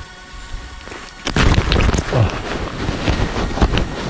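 Close handling noise: rustling and knocking of hands and clothing against the microphone as a freshly caught chub is held and unhooked, starting about a second in and continuing as a cluttered run of bumps and scrapes.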